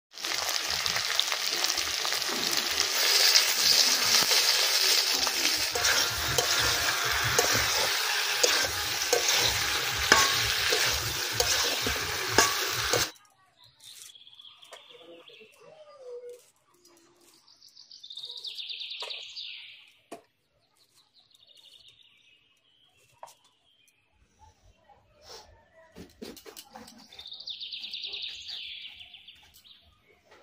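Chicken pieces frying in oil in a wok: a loud steady sizzle that cuts off suddenly about thirteen seconds in. After that, much quieter: scattered soft clicks of onion being cut on a floor-mounted blade, and birds chirping, loudest twice in stretches of a couple of seconds.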